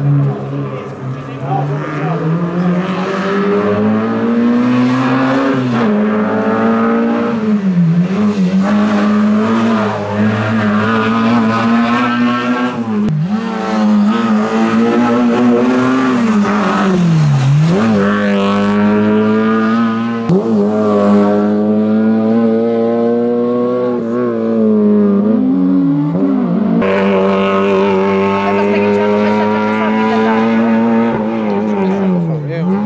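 Rally hatchback engine pulling hard, its note climbing in pitch and dropping sharply again and again as it changes gear and lifts for corners on the stage.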